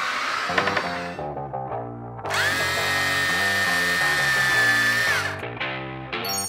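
Cordless drill motor running in a steady high whine for about three seconds, spinning up a couple of seconds in and winding down near the end, over background music.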